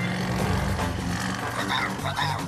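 Cartoon Cat-Car engine running with a steady low hum, under soft background music.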